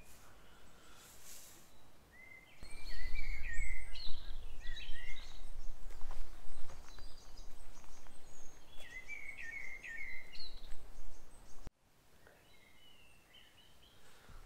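Songbirds singing in short, repeated chirping phrases over a low rumble of wind on the microphone. The sound cuts off abruptly near the end, leaving only faint chirps.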